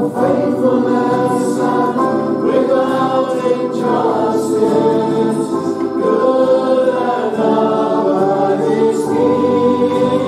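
Church congregation singing a worship song together over instrumental accompaniment, with sustained notes.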